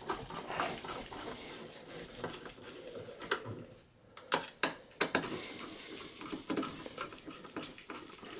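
Phillips screwdriver turning the CPU heatsink's retaining screws down into the motherboard: small metallic clicks, ticks and scrapes over rustling, with a few sharper clicks between about three and five seconds in.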